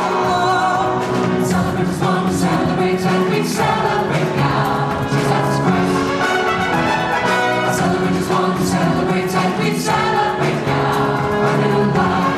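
Mixed choir of men and women singing a worship song together into handheld microphones.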